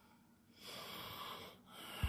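A person breathing close to the microphone: one breath about half a second in, and another starting near the end.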